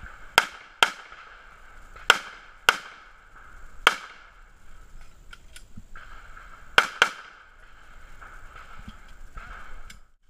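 Handgun shots: seven in all, mostly fired in quick pairs, with pauses of a second or more between the strings.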